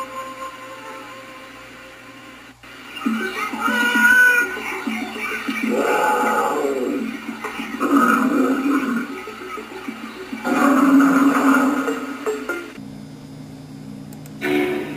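Soundtrack of Nick Jr. animated logo bumpers played through a computer monitor's speakers and picked up by a camera: short music with several loud cartoon big-cat roars and growls. It cuts off sharply near the end, leaving a faint steady hum.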